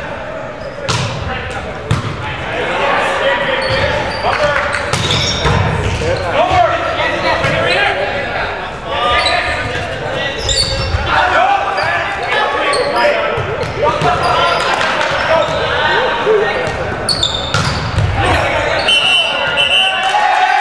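Volleyball rally in an echoing gym: players' voices calling, with several sharp hits of the ball. A short, shrill referee's whistle blast comes near the end.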